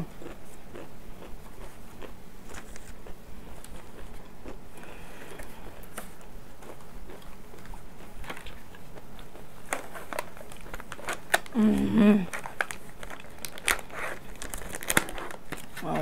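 Plastic food trays and their wrappers crinkling and clicking as they are handled and opened, with chewing and biting between, and a short hummed 'mm' about twelve seconds in.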